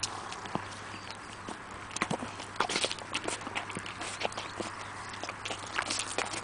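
A horse licking and mouthing a plastic fruit-compote squeeze pouch held to its muzzle, giving irregular smacking clicks and crinkles.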